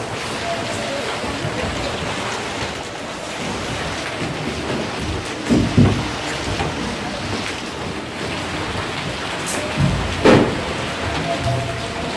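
Hail and heavy rain pelting a street and parked cars: a steady, dense patter, with two short low rumbles, one about halfway through and one near the end.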